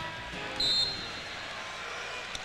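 Basketball arena crowd noise, with one short, high whistle blast about half a second in.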